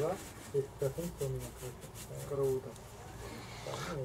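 Faint, indistinct voices of people talking in the background, in short broken phrases.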